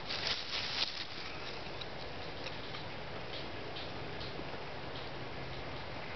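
Small dry sticks clicking and rattling against one another as they are laid side by side across a stick-frame tabletop and nudged into line by hand: a quick cluster of clicks in the first second, then only sparse light taps over a steady background hiss.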